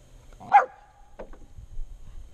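A West Highland White Terrier barks once, a short sharp yap about half a second in, followed by a couple of faint short sounds.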